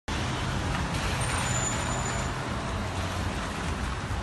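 Police cars driving out past at low speed: steady engine sound with tyre noise on a wet road.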